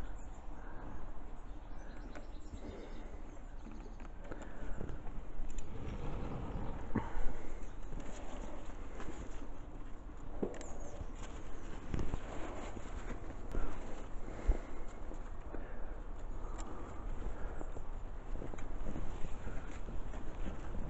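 Leaves rustling and scattered sharp clicks and snaps as hands work through the foliage of a large-leaved lime (Tilia platyphyllos) bonsai, pinching out shoots and terminal buds.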